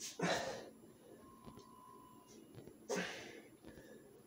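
A man breathing hard during push-ups: two forceful exhalations, one just after the start and one about three seconds in, each lasting about half a second.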